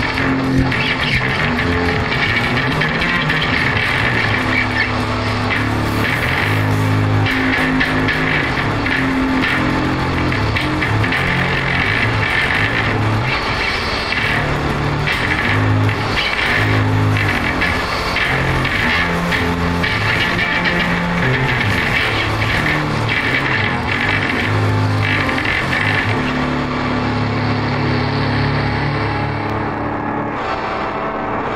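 Instrumental hard rock with no vocals: distorted electric guitar over changing low bass notes, thinning out in the highs near the end.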